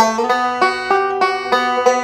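Recording King M5 five-string banjo picked slowly in a forward-and-reverse roll over a B chord shape, about three notes a second, with a doubled B note ringing on under the roll.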